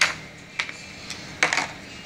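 Hands handling toy figures and plastic blister packaging: three sharp clicks, the loudest right at the start, another about half a second in and a third near a second and a half.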